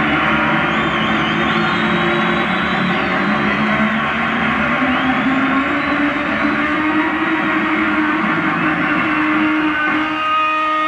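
Live rock concert audio: an electric bass guitar solo, loud and distorted, with long sustained notes, one sliding slowly upward.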